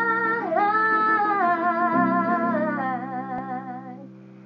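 A woman singing long, wavering held notes without clear words, sliding down and back up about half a second in, over a sustained acoustic guitar chord. The voice and guitar fade near the end.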